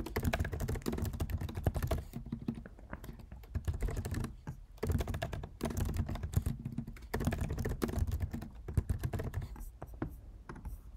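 Fast typing on a computer keyboard: dense runs of key clicks, broken by a couple of short pauses.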